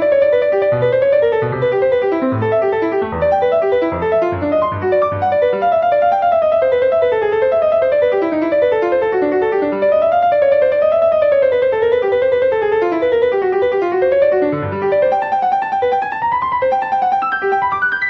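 Piano, a sampled sound from score playback, playing a fast unbroken run of single sixteenth notes in G major with no left-hand accompaniment. The line rises and falls through the middle and upper register.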